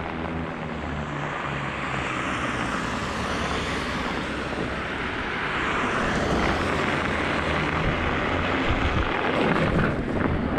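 Steady droning ride noise from a fat-tire e-bike on studded tires rolling over snow and pavement, growing a little louder partway through.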